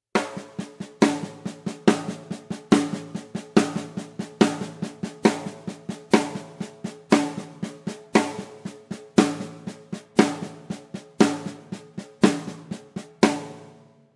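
Snare drum played with the left hand alone: a steady stream of sixteenth notes in groups of four, the first of each group a loud accented rim shot and the other three softer ghost strokes. The accents come about once a second, and the playing stops just before the end.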